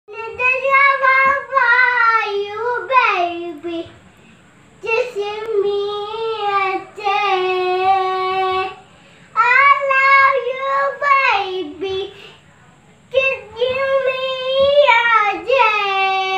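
A young girl singing a song unaccompanied, in four phrases of held, wavering notes with short breaths between them.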